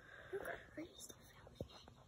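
Faint whispered voice sounds in the first second, then a few soft clicks, all at a low level.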